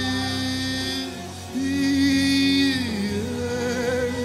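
Live gospel worship music: a man sings long held 'ah' notes over the band's accompaniment, one note sliding down in pitch about three seconds in.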